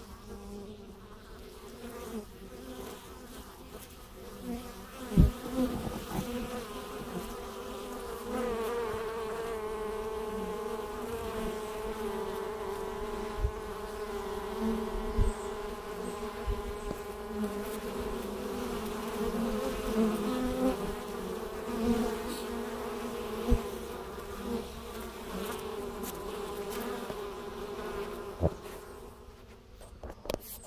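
Honey bees buzzing at a wooden hive's entrance: a continuous hum of wingbeats that grows louder from about eight seconds in, with a few sharp clicks scattered through it.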